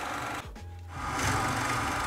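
Drill press running with a Forstner bit boring a hole into plywood, a steady motor and cutting noise that drops for a moment about half a second in, then comes back louder.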